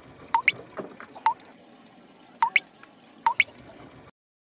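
Water-drop sound effect: about seven bright, quick plinks of falling droplets, each sweeping up in pitch, mostly in close pairs.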